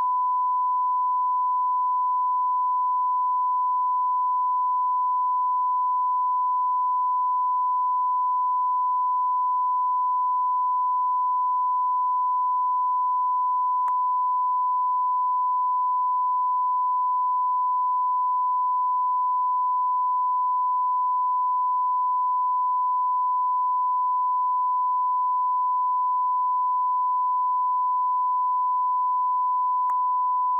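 Broadcast line-up tone: a steady 1 kHz reference tone sent with a network feed's test slate, which marks the feed as idle, with no programme on the line. It holds one unbroken pitch at a constant level, with a faint click about halfway through.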